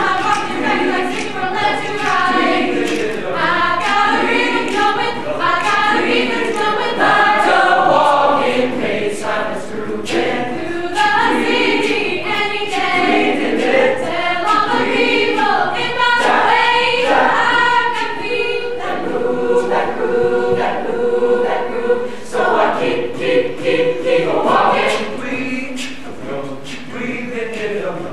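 Mixed-voice high school choir singing a cappella in close harmony, with sharp clicks scattered through it. It moves through busy rhythmic chords, then settles into long held chords in the last third.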